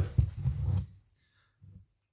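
Handling noise: a sharp knock, then about a second of low scuffling rumble, and a brief low bump near the end.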